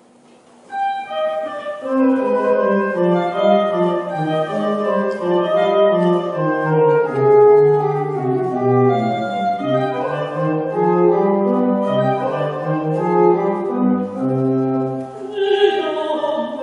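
Children's choir starting to sing less than a second in, several voice parts holding sustained notes together.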